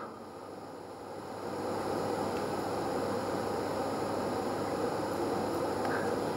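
Steady room background noise, a hiss-like rumble that swells about a second in and then holds level.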